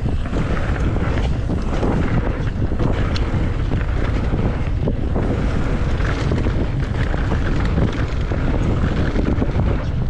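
Wind buffeting the microphone of a camera on a mountain bike riding fast downhill, over a steady rumble of knobby tyres rolling on a dirt-and-gravel trail, with frequent short knocks and rattles from the bike over bumps.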